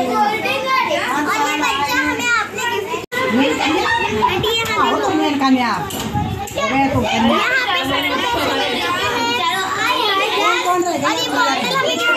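A group of young children talking and calling out at once, their high voices overlapping in busy chatter. The sound drops out for a moment about three seconds in.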